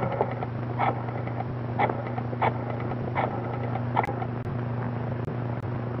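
Rotary dial telephone being picked up and dialed: a series of short clicks about a second apart, over the steady low hum of an old film soundtrack.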